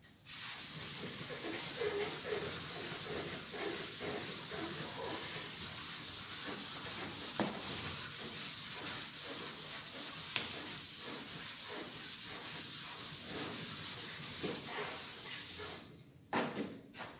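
A chalkboard being erased, rubbed in quick repeated back-and-forth strokes. It starts just after the opening and stops just before the end.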